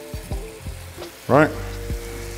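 Chef's knife scraping chopped parsley across a wooden cutting board, with a few light clicks and taps, over soft background music with sustained tones.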